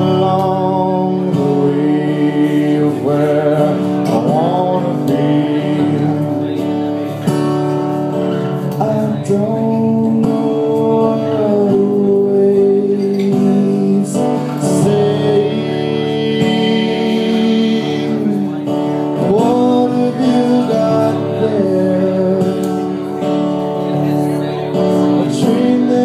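Solo acoustic guitar with a man singing over it, a slow original song; his voice wavers in long held notes above the guitar chords.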